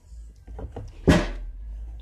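A single sharp knock about a second in, like something hard set down or a cupboard door closing, over a low rumble.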